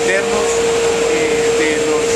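Plastic recycling machine running with a loud, steady drone and a constant mid-pitched hum.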